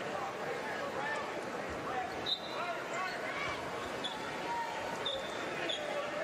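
Basketball arena crowd noise with many overlapping voices, and a few short sneaker squeaks on the hardwood court in the second half, along with a basketball bouncing.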